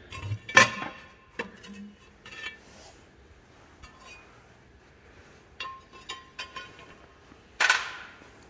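Metal parts clinking and knocking as a bolted steel side cover comes off an engine block and is handled, in scattered separate strikes, some with a short ring. Near the end there is a brief, louder burst of noise.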